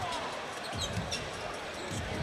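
Arena crowd noise with a basketball being dribbled on the hardwood court during live NBA play.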